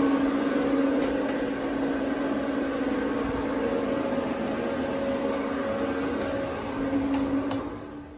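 Bathroom exhaust fan running with a steady hum and whoosh, fading out near the end.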